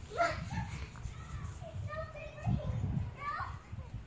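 A young child's voice, faint and distant, in short high-pitched calls and bits of speech, over a low rumble.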